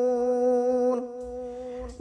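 A man's voice reciting the Quran in melodic tilawat style, holding one long, steady, unwavering note at the end of a phrase. The note drops softer about halfway through and fades just before the next phrase.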